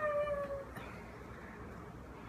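A woman laughing: one drawn-out, slowly falling high note lasting well under a second at the start, then quiet room tone.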